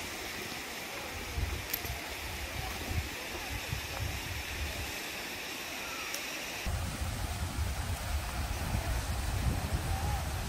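Steady rush of a waterfall pouring down a rock cliff, with wind buffeting the microphone. The wind rumble grows heavier about two-thirds of the way in.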